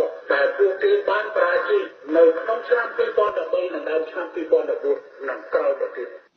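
Speech only: a person talking steadily, with short pauses.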